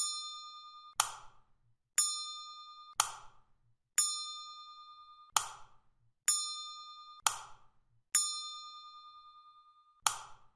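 A bell-like chime sound effect struck nine times at roughly one-second intervals, each ding ringing and fading before the next. The dings accompany the keyed steps of the FIFO-filling simulation.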